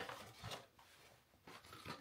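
Faint handling of cardboard packaging: a few soft rustles and taps near the start, around half a second in and near the end, with near silence between.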